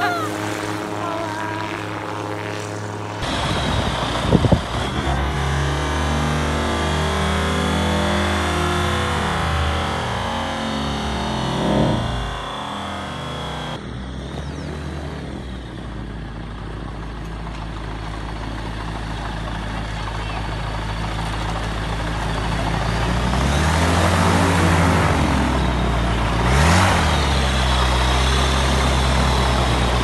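Weight-shift microlight trike's engine and pusher propeller running: first flying past overhead, then on the ground taxiing. Near the end the engine speed rises and falls twice before settling to a steady run.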